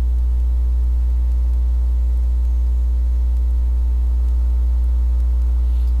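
Steady electrical mains hum: a loud low drone with a ladder of fainter steady overtones above it, unchanging throughout.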